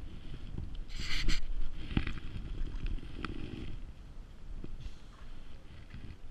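A crappie being put into a wire fish basket hanging in the water beside a small boat: a short loud rush of noise about a second in, then a few light knocks, over a low wind rumble.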